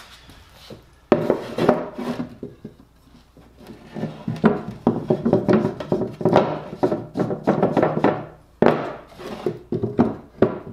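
Wooden boards knocking and rubbing against a plywood base as they are shifted into place and set in a corner clamp. A sudden knock comes about a second in, then a busy stretch of handling knocks and scraping in the second half.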